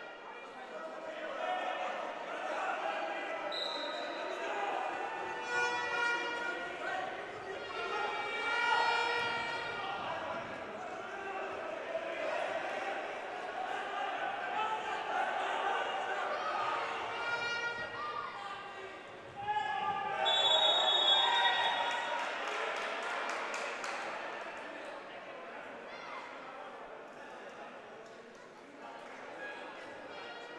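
Players and spectators shouting and calling in a large indoor sports hall, with a football being bounced and kicked on the pitch. The voices echo in the hall, growing louder for a while about two-thirds of the way through.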